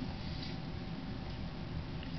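Steady low room noise and recording hiss, with no distinct sound from the clay work.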